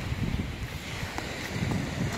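Wind buffeting the phone's microphone in uneven low gusts.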